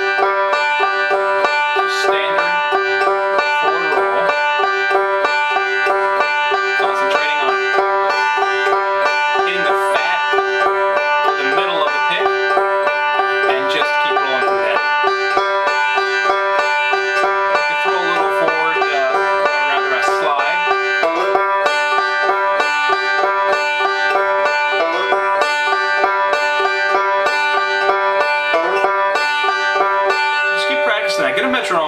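Five-string banjo played in a continuous three-finger forward roll, the picked notes ringing over one another at an even level.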